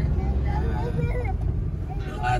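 Steady low rumble of a moving road vehicle, with quieter talking heard over it.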